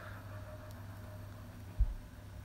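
Faint, steady sound of a pot of water boiling on a stovetop burner, with one dull low bump near the end.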